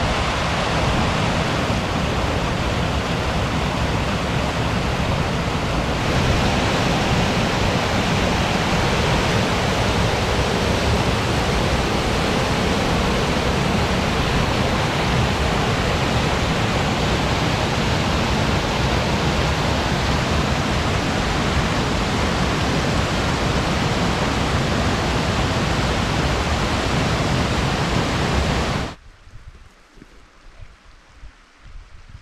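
Small waterfall and rapids rushing through a narrow rock gorge: a loud, steady, unbroken rush of water that cuts off suddenly about a second before the end.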